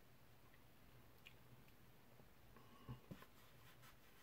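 Near silence: room tone, with a couple of faint small clicks about three seconds in.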